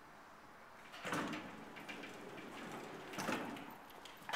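Elevator doors sliding, starting suddenly about a second in with a clatter, and a second louder clatter a little past three seconds.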